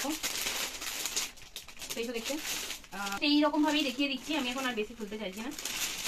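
Clear plastic packaging crinkling as it is handled, most plainly in the first two seconds, followed by a woman's voice.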